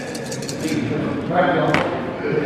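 A handful of dice rattling and clattering onto a tabletop: a quick run of small clicks, then one more sharp click near the end, over background voices in a large room.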